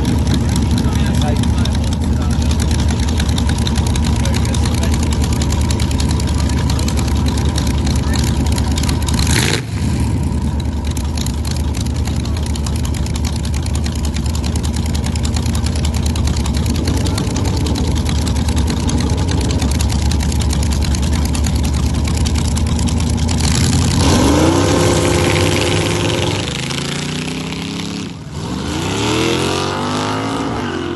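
Front-engined slingshot dragster's engine idling on the start line, running steadily for over twenty seconds. About 24 s in it revs hard and launches, the pitch climbing and then falling away as it runs down the strip, with another rising sweep near the end.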